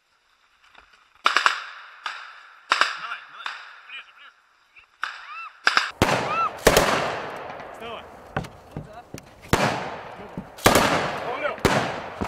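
Assault rifles firing blank rounds, mixed with louder bangs, in irregular single reports, each with a long echo. The shots come sparsely at first, then turn louder and closer together from about six seconds in.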